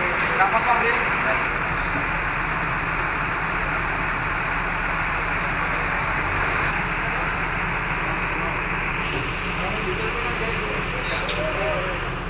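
Steady, even noise of road traffic and running vehicle engines, with a low hum underneath and voices in the background near the start and again near the end.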